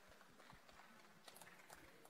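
Near silence with a few faint, irregular footsteps on the stage floor.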